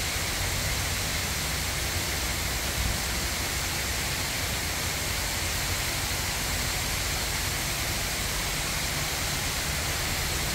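A steady rushing noise with a ragged low rumble underneath, unchanging throughout.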